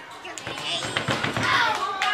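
Young children's voices talking over one another, getting louder in the second half, with a few light taps early on.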